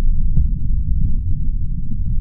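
Loud, muffled low throbbing with nothing in the upper range, with one brief click about a third of a second in.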